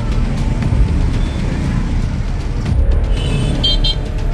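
Steady low rumbling noise of a car fire at a petrol station, with background music over it. Brief high tones near the end.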